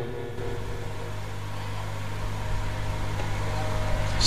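Steady low electrical hum with an even hiss from a live sound-reinforcement and recording system.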